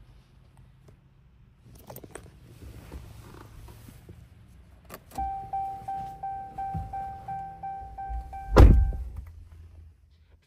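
Pickup truck's dashboard warning chime sounding, a steady ringing tone pulsing about three times a second for about four seconds, just after a click. Near the end a heavy thunk, the loudest sound, and the chime stops right after it.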